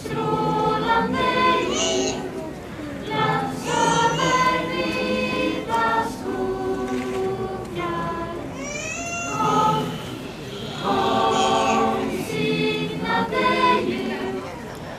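A Lucia-procession choir of young singers singing in several voices together, phrase by phrase, with short pauses between lines.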